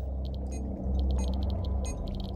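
A deep low drone, growing louder about a second in, with faint irregular clicking over it, typical of a Geiger counter registering radiation.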